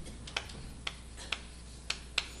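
Chalk tapping on a chalkboard while writing: four short, sharp clicks about half a second apart, fairly quiet, over a low room hum.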